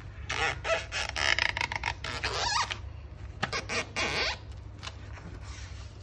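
A child's hand rubbing hard over wet paint on a paper book page, smearing the colours together in two spells of rubbing: a longer one starting just in, then a shorter one about three and a half seconds in.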